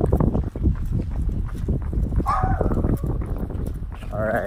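A person running on pavement: quick, repeated footfalls and handling knocks picked up close by a handheld phone's built-in microphone. A brief pitched call cuts in a little past the middle.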